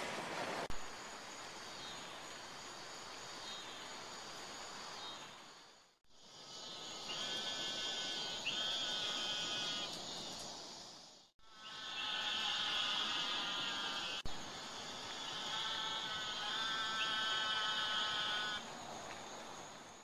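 Outdoor evening ambience with a chorus of calling insects: a steady high buzz and layered droning tones. The sound drops out briefly twice where the footage is cut.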